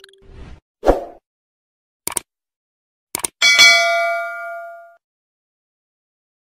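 Editing sound effects: a few short clicks and a thud, then a bright metallic ding that rings with many overtones and fades out over about a second and a half.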